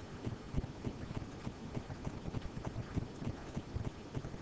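Irregular light taps and clicks of a stylus writing on a pen tablet as a number is hand-written, with faint background hiss.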